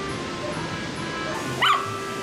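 Background music, with one short high yip from a toy poodle about a second and a half in.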